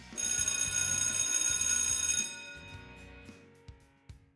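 A bell ringing loudly for about two seconds, one continuous high ring that cuts off abruptly and then fades, over background music.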